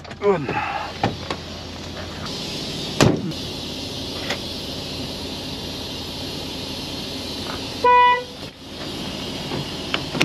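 A Volvo semi-truck's cab door slams shut about three seconds in, over a steady background hum. About eight seconds in a short, single-pitched horn toot sounds for about half a second, the loudest sound here.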